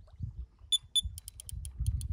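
Electronic fishing bite alarm beeping as line is pulled through it. Two single beeps, then a fast run of about eight beeps a second: the signal of a fish taking line.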